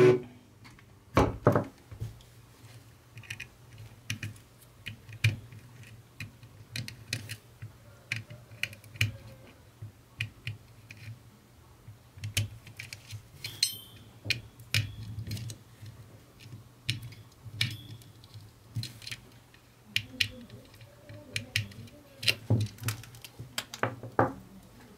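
Irregular small clicks and knocks of hands working at a Class D amplifier board, disconnecting its wires and picking it up, over a faint steady low hum. The loudest knock comes about a second in.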